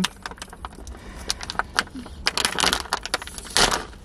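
A plastic snack wrapper crinkling and tearing as it is opened by hand, in a quick, irregular run of crackles.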